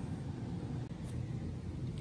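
Steady low background noise of shop room tone, with no distinct events.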